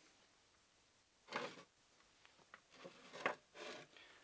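Faint handling sounds of ceramic ferrite ring magnets on a wooden table: a short scrape about a second and a half in, then a few light taps and clicks.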